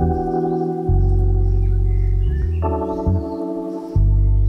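Background music: slow, sustained keyboard chords over a deep bass, changing chord about a second in and again past two and a half seconds.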